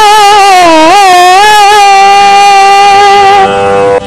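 A woman singing gamaka, Kannada verse set to a Carnatic raga. She holds a long vowel with wavering pitch ornaments for the first second or so, then settles on one steady held note that fades out near the end, over a steady drone.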